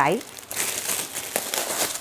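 Clear plastic wrapping crinkling as it is handled and pulled off a new patent-leather shoe, a dense run of small crackles from about half a second in.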